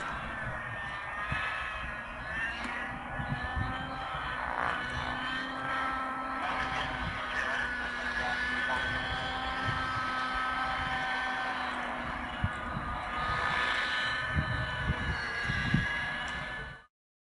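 Radio-controlled model helicopter in flight: its engine and rotors give a steady whine whose pitch slowly rises and falls as it flies flips and an inverted hover.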